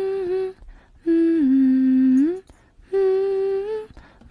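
A person humming a slow tune in long held notes, about a second each with short breaks between; the longest note steps lower and glides back up.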